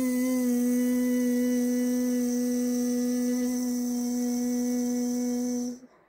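A woman's voice buzzing out one long, steady 'zzz' on a single held pitch, the exhale of a diaphragmatic-breathing vocal warm-up. It stops shortly before the end.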